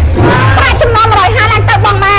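A woman talking over a steady low rumble.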